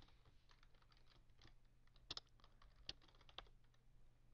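Faint, irregular keystrokes on a computer keyboard as a line of code is typed, about a dozen scattered clicks over a low steady hum.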